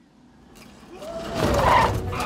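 A cartoon jeep speeding off with its engine running hard and its wheels spinning in the dirt. The rumble swells from quiet to loud over about the first second and a half.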